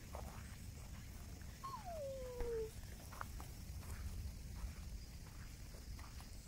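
A single sika deer call, about a second long, sliding down from a high squeak to a lower pitch, about two seconds in. A low steady rumble and a few faint clicks run underneath.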